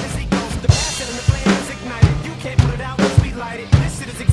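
Acoustic drum kit with Zildjian cymbals played hard: a steady kick-drum pulse about twice a second with snare and cymbal hits, and a crash cymbal ringing about a second in, over the song's backing music.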